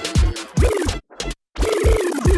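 Grime instrumental played on DJ decks and cut up with scratching. The beat and bass chop on and off under sliding pitch sweeps, and everything drops out for about half a second in the middle.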